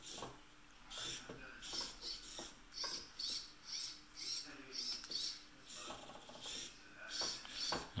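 Motors of an Arduino-controlled gimbal whirring in short, high-pitched bursts, about two a second, some with a squeaky rising or falling pitch as the mount moves.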